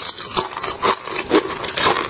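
Close-miked chewing of food, a burst of mouth noise about twice a second.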